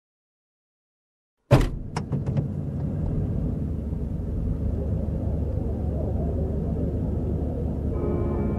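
Car cabin sound: a sharp knock about a second and a half in, then a few lighter clicks, then the steady low rumble of a car on the move, heard from inside.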